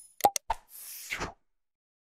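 Subscribe-button animation sound effects: three quick clicks, then a short swoosh about three-quarters of a second in.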